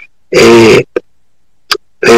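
A speaker's voice: one short held vowel sound between pauses in speech, followed by two faint clicks.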